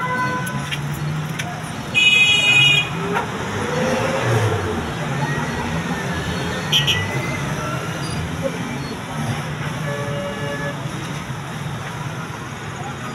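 Road traffic at a busy junction: motorcycle and small-vehicle engines running over a steady street hum. A vehicle horn sounds loudly for about a second, two seconds in, and gives a second short toot near the seven-second mark.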